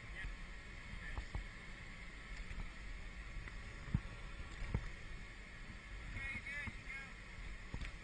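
Faint steady rush of wind and snow hiss from a shovel sliding down a ski slope, with a few sharp clicks. A faint distant voice comes in near the end.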